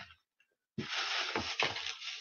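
Crinkling and rustling of a grocery bag being handled, starting about a second in, with a few soft knocks as items are moved.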